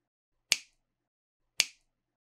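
Two short, sharp snap-like clicks about a second apart, each with a brief tail, set in otherwise dead digital silence: an edited-in sound effect on an animated logo card.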